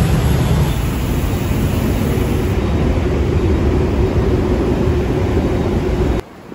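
Dense city road traffic: a steady, loud rumble of many car and motorbike engines and tyres. About halfway through, a steadier engine hum joins in, and the sound cuts off abruptly at the very end.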